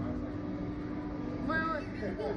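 Steady low machine hum from the slingshot ride's capsule and machinery while it waits to launch. A girl gives a brief high-pitched vocal sound about one and a half seconds in.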